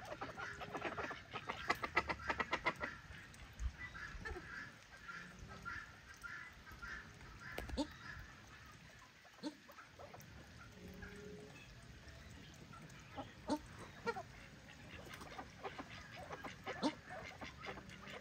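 Waterfowl calling in a farmyard: a quick run of repeated honking calls in the first few seconds, then scattered, quieter calls.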